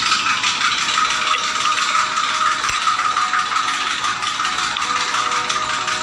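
A loud, dense rattling and clicking noise with a steady high tone running through it, mixed with music. It starts suddenly and cuts off suddenly.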